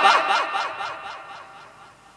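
A man's voice through a microphone and loudspeaker system trailing off after his last words. Its rapid, evenly spaced echo repeats fade away over about a second and a half.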